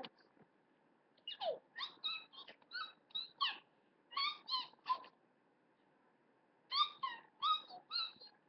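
A child's high-pitched squeaks and squeals in quick short bursts, some sliding down in pitch: one run from about a second in to five seconds, then a pause, and another run near the end.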